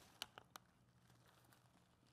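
Near silence with a low steady hum, broken in the first half second by a few faint clicks from hands handling tie line over a staghorn fern on its wooden mount.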